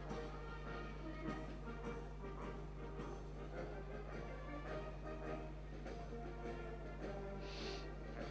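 A brass marching band playing a march, fairly faint, over a steady low electrical hum.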